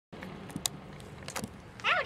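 Steady low outdoor background hum with a few sharp clicks, then a child's voice starting near the end.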